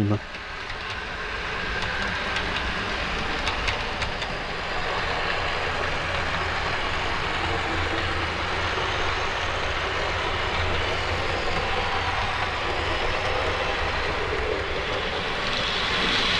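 OO gauge Lima Class 117 DMU model, converted to DCC, running along the track: a steady motor hum with wheel-on-rail rumble, quite quiet for an old Lima motor. It grows louder over the first couple of seconds, then holds even.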